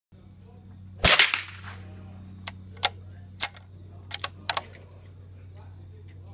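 A .22 Brno rifle fired once about a second in, a sharp crack with a short echo. Several fainter sharp cracks and clicks follow over the next few seconds.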